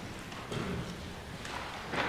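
Footsteps on a hard floor, with low, uneven room noise in a large, quiet room.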